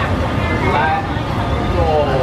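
Busy street ambience: indistinct voices talking over a steady low rumble of traffic.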